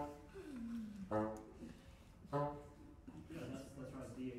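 Three short, loud pitched notes about a second apart from a live trio of accordion, bassoon and marimba, with a falling slide between the first two.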